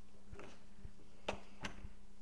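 Soft footsteps on a wooden floor over a steady low hum, with two sharp clicks a little past the middle.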